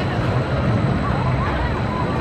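Gerstlauer spinning coaster car running along its steel track, a steady low rumble, with voices in the background.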